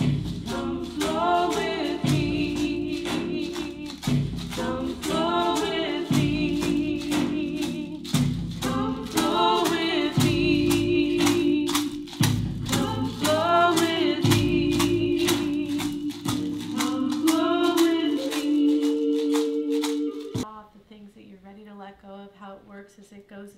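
A recorded native chant: voices singing a repeated phrase about every two seconds over a steady drone, with percussion keeping an even beat. It cuts off suddenly near the end.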